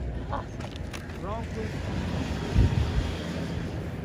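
Wind rumbling on the microphone over a steady hiss of wind and surf.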